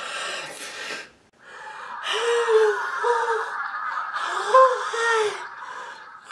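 A young man's strained attempt at a high-pitched voice: a breathy, gasping rush of air in the first second, then a wheezy hiss carrying about four squeaky falsetto notes, each rising and falling.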